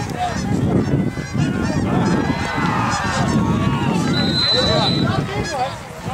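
A flock of geese honking overhead, many short calls overlapping one another.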